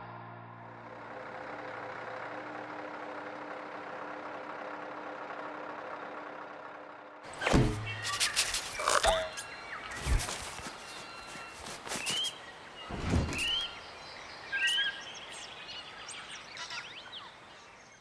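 A steady low hum and rumble of an idling articulated truck, then a logo sting made of sound effects: several sharp thuds and quick whooshes, with three short rising bird-like chirps in the second half.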